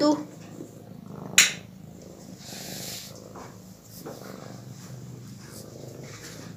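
Domestic cat purring steadily as it is stroked, a low pulsing rumble, with one sharp click about a second and a half in.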